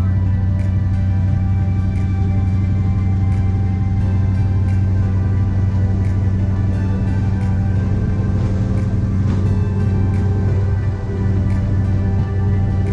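Background music laid over the steady low drone of a passenger ferry's engine running under way.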